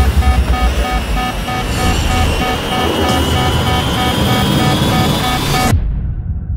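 A small plane going down: a loud roar of engine and rushing air with a cockpit warning alarm beeping rapidly over it and a whine rising in pitch from about halfway through. Everything cuts off abruptly near the end.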